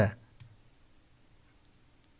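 The end of a short spoken word, then quiet room tone with one faint click about half a second in.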